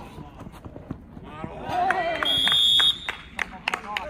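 Players shouting on the pitch, with a single steady high-pitched whistle tone lasting well under a second near the middle, and scattered sharp knocks of play before and after it.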